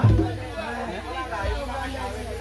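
The music and singing break off right at the start, leaving several people talking over one another, with a steady low hum underneath.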